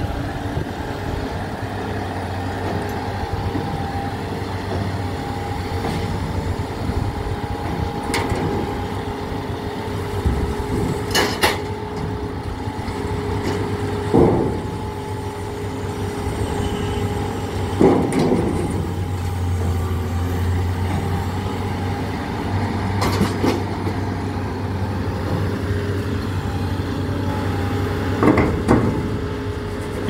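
Caterpillar 325D excavator's diesel engine running steadily while it works scrap with a lifting magnet, with several sudden loud metal clanks as pieces of scrap knock together and against the trailer.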